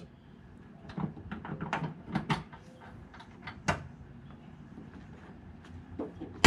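Scattered clicks and light knocks as the open hood of a Honda CR-V is handled and lowered, the sharpest nearly four seconds in, over a faint steady hum.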